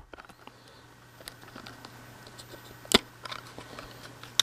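Small plastic container being prised open by hand: faint handling rustle and light clicks, with one sharp plastic click about three seconds in, over a faint steady low hum.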